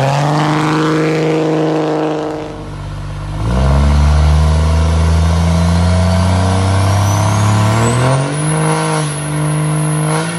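Cummins turbo-diesel Dodge Ram pickup doing a burnout, its engine held high and steady while the tyres spin. After a few seconds a second Ram's diesel takes over with a deeper, heavy drone and revs up about eight seconds in as its burnout starts. A faint rising whistle runs underneath.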